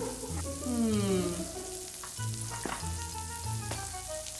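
A steady crackling hiss, like a sizzle, over a low pulsing bass. Sliding tones come early in the first second, then held tones with two sharp clicks near the end. This is an added sound effect or score.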